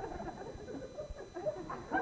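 Quiet, stifled laughter: short breathy giggles from actors breaking up during a flubbed take.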